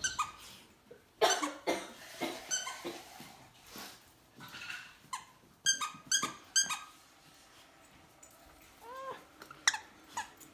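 Small dog playing with a new plush toy: a string of short, sharp sounds, with several in quick succession around the middle and two short curved calls near the end.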